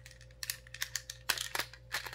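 Hard plastic parts of a Beyblade X launcher grip and Bey Battle Pass clicking and clattering as they are handled and fitted together, a quick irregular run of sharp clicks starting about half a second in.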